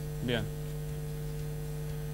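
Steady electrical hum: a constant low drone with a fainter higher tone above it, holding level throughout.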